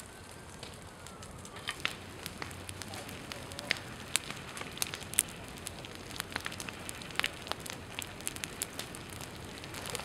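Low flames burning through dry pine-needle litter, crackling and popping with many sharp, irregular snaps over a steady hiss. The snaps start about a second and a half in and come thicker as it goes on.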